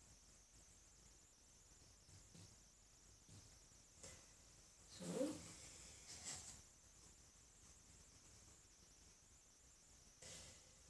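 Near silence: faint room tone, broken by a few soft, brief sounds, the clearest a short rising pitched sound about five seconds in.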